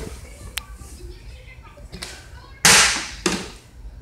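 A partly filled plastic water bottle, flipped, hitting a tile floor: one loud hit about two and a half seconds in, then a smaller knock just after as it falls over onto its side, a failed flip. A faint click comes earlier.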